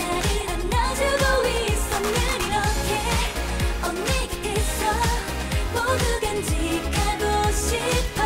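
K-pop song performed by a girl group: a female solo vocal over a pop backing track with a steady drum beat.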